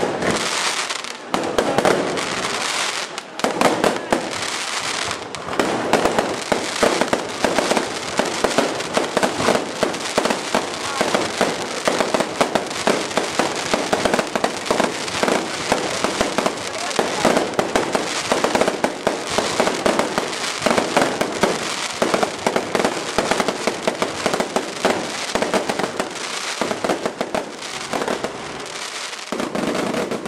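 Aerial fireworks display: a dense, unbroken barrage of bangs and crackling bursts overhead, many reports a second.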